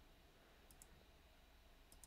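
Near silence with faint computer mouse clicks: two quick clicks under a second in and one more near the end.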